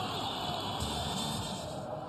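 Steady stadium ambience from football match footage: an even wash of distant crowd and field noise.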